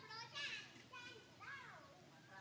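Newborn long-tailed macaque giving a run of short, high-pitched cries, about four calls in quick succession, the loudest about half a second in and the last one arching up and down in pitch.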